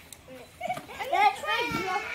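Children's high-pitched voices, excited calls and chatter that start about half a second in and grow louder.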